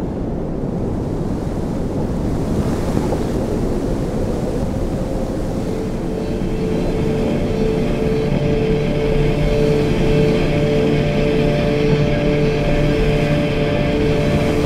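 Soundtrack opening: a low, steady rushing rumble like wind and surf, with held musical chord tones fading in about six seconds in and the whole slowly building in loudness.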